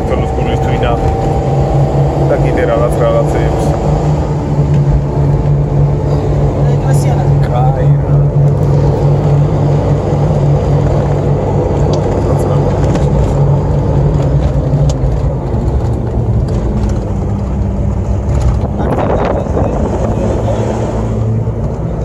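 A car's engine and road noise heard from inside the cabin while driving: a steady, even drone that settles slightly lower in the second half.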